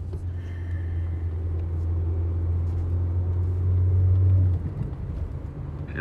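Car driving, heard from inside the cabin: a steady low drone that swells over the first four seconds, then drops and thins about four and a half seconds in.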